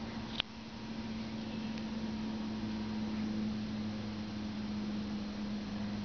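A steady low machine hum over a background hiss, with one sharp click about half a second in.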